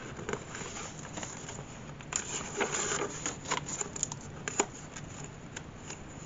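Paper pages of a handmade junk journal being handled and turned: soft rustling with a few light clicks and taps, busiest about two seconds in and again briefly a little past the middle.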